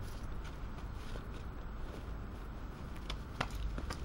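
Faint handling noise over a steady low outdoor rumble, with two sharp clicks near the end.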